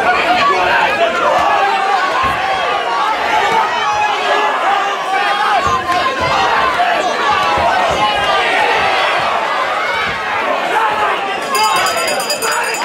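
Crowd chatter in a hall: many voices talking at once, with no single speaker standing out.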